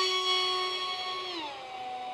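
Fasttech 2212/6 2700 Kv brushless outrunner and 6x3x3 three-blade carbon prop of an RC park jet in flight, a steady high whine. Its pitch drops about one and a half seconds in and the whine fades.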